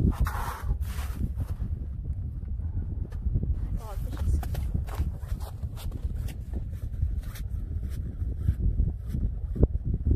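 Wind buffeting the microphone as a steady low rumble, with boots crunching in snow about half a second in and scattered light clicks afterwards.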